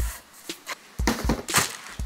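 A cardboard shipping box and a plastic padded mailer being handled: a few dull thumps as the box is moved and set down, and a crinkling rustle of the mailer about a second and a half in.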